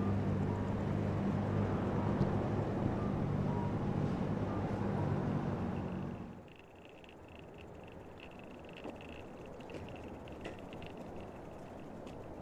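Street traffic at a city intersection: road noise with the steady low hum of a vehicle engine running. About six seconds in, this cuts off suddenly to a much quieter background with a faint, steady high-pitched chirring and a few small ticks.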